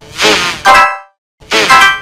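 Logo intro jingle run through a warbling 'rolling wave' sound effect: two loud bursts of ringing, pitch-wobbling tones with a sudden cut-out of about half a second between them.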